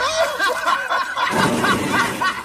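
A person laughing in a high, wavering voice, with a breathy burst of laughter about one and a half seconds in.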